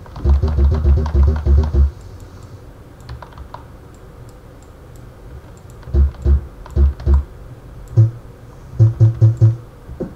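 Typing on a computer keyboard close to the microphone, heard as short dull keystroke thuds in bursts: a fast run at the start, a pause of a few seconds, then more scattered strokes and a quick run near the end.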